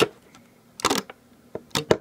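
Sharp clicks and taps from handling the Rainbow Loom and its hook on a table: one at the start, a louder cluster about a second in, and two close together near the end.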